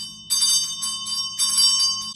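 A small high-pitched bell rung in quick repeated strokes, about four or five a second, in two runs with a brief pause between them just after the start.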